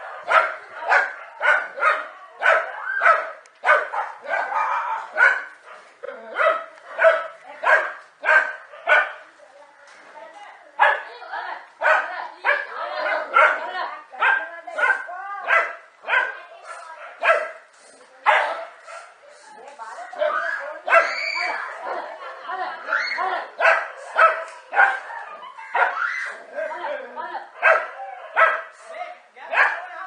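Dogs barking in rapid, repeated volleys, about two barks a second, as they attack a snake, with a few longer wavering cries around the middle.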